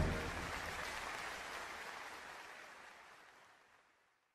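An even, hiss-like wash of noise with no clear tones, the closing tail of a recorded soundtrack, fading out steadily and gone about three and a half seconds in.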